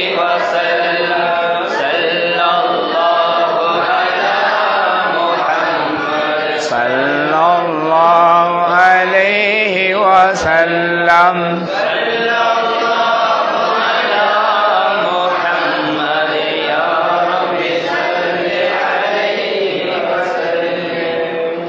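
Group of men chanting Arabic mawlid verses in praise of the Prophet together, without pause. About seven to eleven seconds in, one strongly wavering, ornamented voice stands out over a held low note.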